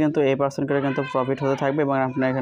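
A man talking in quick, continuous narration.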